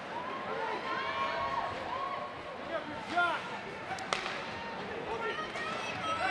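Ice hockey rink sounds during play: faint voices of the crowd and players, with two sharp knocks of stick and puck about three and four seconds in.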